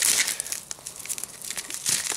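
Plastic bubble wrap and packing film crinkling and crackling as it is pulled and unwound by hand, irregular, with louder crackles at the start and again near the end.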